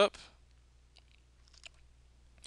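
The tail of a man's spoken word, then near silence with a few faint clicks about a second in and again shortly before the end.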